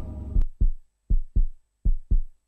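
Heartbeat sound effect: low thumps in lub-dub pairs, a pair about every three quarters of a second. It starts about half a second in, as the preceding music cuts off with a click.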